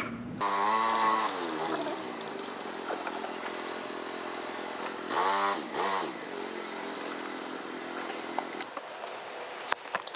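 Small motorbike engine pulling away, its pitch climbing as it speeds up. It rises and falls again about five seconds in, then holds steady and drops away shortly before the end.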